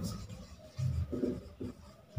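Marker pen writing a word on a whiteboard: a few short rubbing strokes in the second half.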